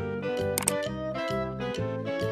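Children's background music with a steady bass beat, about four notes a second. A short click sound effect comes about half a second in, as the on-screen answer is selected.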